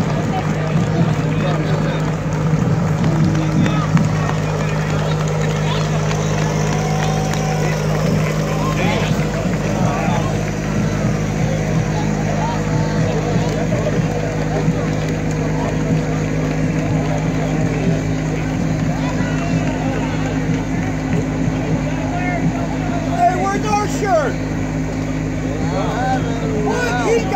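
Steady engine hum of a slow-moving parade vehicle carrying a float past, with the chatter of a roadside crowd over it.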